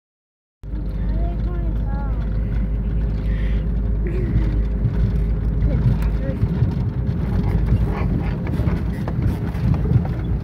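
Four-wheel-drive Jeep driving on a dirt road, heard from inside the cabin: a steady low rumble of engine and tyres that begins abruptly just after the start.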